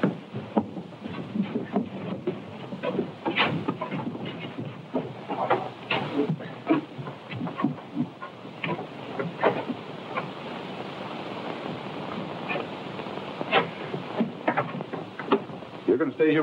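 Scuffle of men tying a struggling captive into a wooden chair: irregular knocks, shuffles and rustles at uneven intervals, over the steady hiss of a worn early-sound-film soundtrack.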